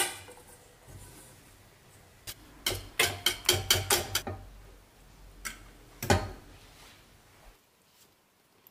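Wire whisk clicking against the sides of a stainless steel saucepan as it stirs custard cooking on the heat: a quick run of metallic clicks a couple of seconds in, then a shorter burst a little later. A low steady hum runs underneath and stops shortly before the end.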